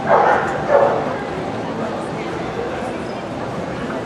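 A dog barking twice in quick succession about half a second apart near the start, over the steady chatter of a crowded hall.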